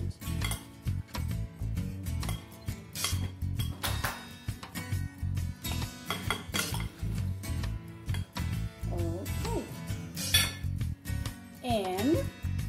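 Metal spoons clinking and scraping against a glass bowl as chopped fruit is stirred, with irregular clinks throughout.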